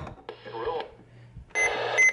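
Weather radio receiver on a weak signal: bursts of static hiss with a faint broadcast voice breaking through, then hiss again with thin steady whistles near the end.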